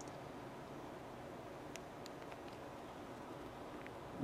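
Quiet steady room hiss with a few faint, short clicks from keys being pressed on a BlackBerry phone's keyboard, scattered through the middle and near the end.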